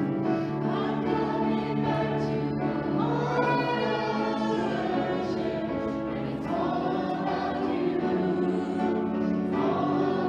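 A small group of four singers singing a sacred song in harmony, accompanied on piano, with held notes and phrases running on without a break.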